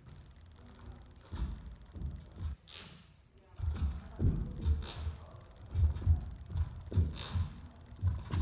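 Ballet dancer's pointe shoes and feet thumping and knocking on the studio floor as she dances unaccompanied, in uneven runs of two or three steps a second, busiest in the second half.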